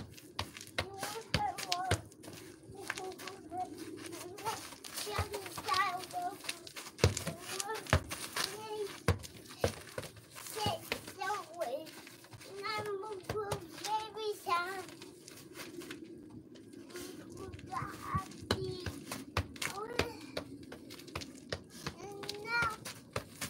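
A toddler's voice babbling and calling out without clear words, with scattered sharp knocks.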